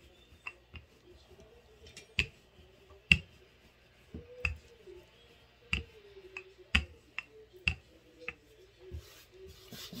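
Wooden rolling pin rolled back and forth over pasta dough on a floured countertop, giving sharp clicks or knocks about once a second as it changes direction.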